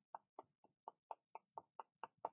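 Faint, quick taps of a flat paintbrush stroking paint onto paper, about four a second in a steady rhythm.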